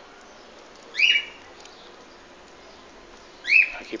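A short, high whistle-like animal call that holds briefly and then drops in pitch, heard about a second in and again near the end.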